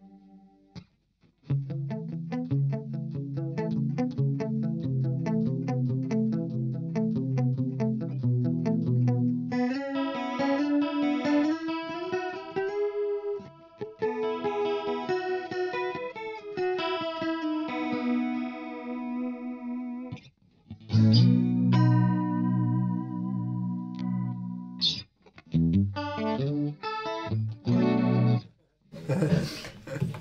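Electric guitar played through a Chase Bliss Warped Vinyl HiFi analog vibrato/chorus pedal, with the dry signal mixed back in against the modulated one for a chorus sound. Picked chords start after a short silence, then a melodic line with gently wavering pitch, then short phrases with brief gaps near the end.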